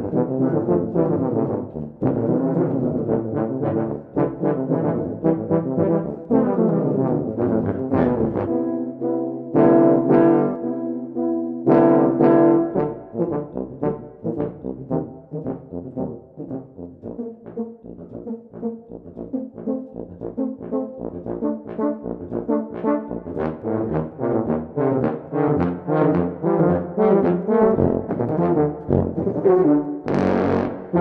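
Tuba ensemble of four F tubas and a CC tuba playing a busy passage of short, detached notes. Two held chords come about ten and twelve seconds in.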